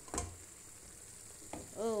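Chicken pieces sizzling faintly as they fry in a pan on a gas stove, with a short knock just after the start and a small click about one and a half seconds in.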